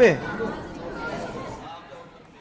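Voices calling out over background chatter: a loud "oh" at the start, then a call of "here", fading away near the end.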